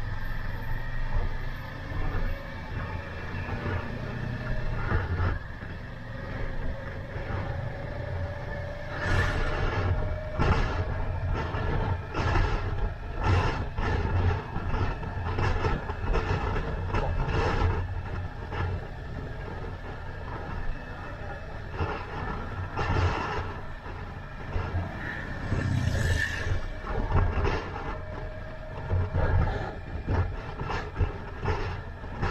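Motorcycle engine running on the move with heavy wind buffeting on the helmet microphone. The engine note rises steadily as the bike accelerates about five seconds in, and again near the end, while gusts of wind noise come and go through the middle.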